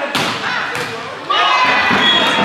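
Volleyball struck hard in a spike, a sharp smack, followed by a second smack less than a second later as the ball meets the block or the floor. About a second and a bit in, players break into loud shouting and cheering as the point is won.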